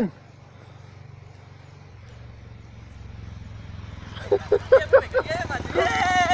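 A person calling out: a few short shouts from about four seconds in, then a long drawn-out call near the end. Under it there is a low, steady rumble.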